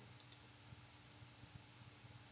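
Near silence with two faint computer mouse clicks close together shortly after the start, over a low steady hum.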